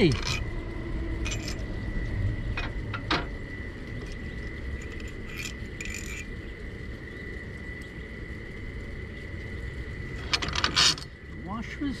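Scattered small metallic clicks and clinks of washers and screws being handled at a trailer jack's mounting bracket, with a quick rattling cluster near the end. A faint steady high tone runs underneath.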